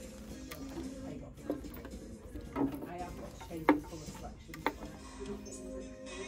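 Faint background music and voices, with four sharp clicks and knocks about a second apart, the loudest in the middle, from goods and wooden hangers being handled on shelves and rails.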